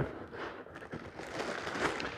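Plastic packaging crinkling and rustling in irregular crackles as hands dig into a cardboard box.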